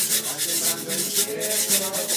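A güiro scraped in a quick, even rhythm, about four to five strokes a second, with voices faintly behind it.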